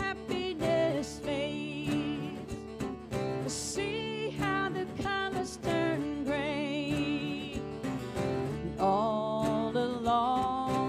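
A woman singing a slow folk-pop song with wavering held notes, accompanied by her own acoustic guitar.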